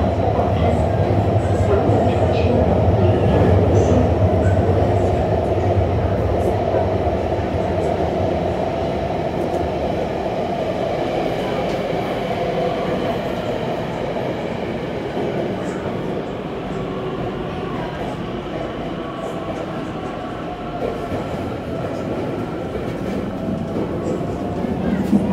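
Metro train running, heard inside the passenger car: a continuous rumble and running noise of wheels and motors. The low rumble fades after several seconds and the whole sound gradually gets quieter.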